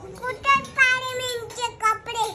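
A young child's high-pitched voice in a drawn-out, sing-song wordless call, with a long held note that falls slightly, then a couple of short vocal sounds near the end.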